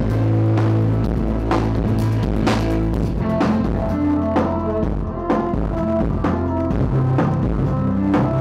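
Live electronic-pop music: an amplified violin melody over keyboards, heavy bass and a steady drum beat of about two strokes a second.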